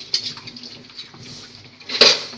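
Broth boiling in a metal soup pot, a steady bubbling hiss, with a few light clicks near the start.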